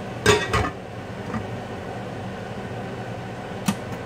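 Two sharp knocks of kitchenware in quick succession near the start, then a single click near the end, over a steady low mechanical hum.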